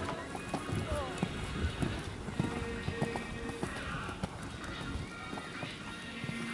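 Horse's hooves thudding on a sand arena at a canter, a dull beat roughly twice a second, as it takes a fence. Background music and voices run underneath.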